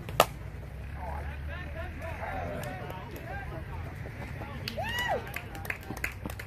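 A softball bat strikes the ball with one sharp crack a moment in, followed by players shouting and calling out on the field, with a loud yell about five seconds in.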